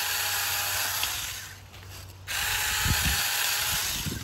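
Saker 4-inch 20-volt cordless mini electric chainsaw running in two bursts while cutting blackberry canes. The motor and chain sound dies away about halfway through, then starts again a little after two seconds in.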